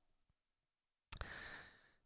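Near silence, then a little over a second in, a short, soft breath from the narrator at the microphone, ending just before he speaks again.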